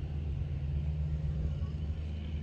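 A steady low motor hum that keeps an even pitch throughout.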